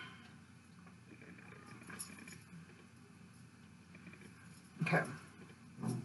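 Quiet small-room tone with a faint steady low hum and a soft click about two seconds in.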